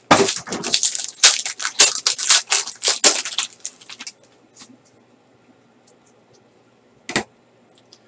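Plastic wrapper on a pack of trading cards crinkling and tearing as it is opened, a dense crackle for about four seconds. Near the end comes a single knock as the stack of cards is set down on the table.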